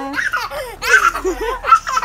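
A toddler laughing in short, high-pitched bursts, loudest about a second in and again near the end.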